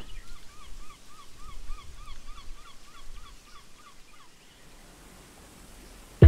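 A bird calling a quick run of short, repeated notes, about four a second, dying away after about four seconds, over a low outdoor rumble.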